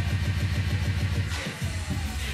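Loud live electronic dance music with heavy bass playing a rapid stuttering roll. About one and a half seconds in, the bass cuts out briefly under a rising hiss, then comes back.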